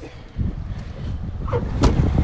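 Low, steady rumble of a heavy truck engine running nearby, with a sharp knock near the end.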